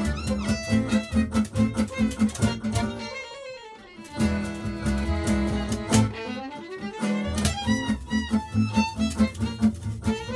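Live gypsy jazz band playing a swing tune, with violin lead over a pulsing rhythm of acoustic guitar, upright bass and accordion. About three seconds in the band thins out for a moment and a line slides down in pitch; near eight seconds a line slides back up as the full band carries on.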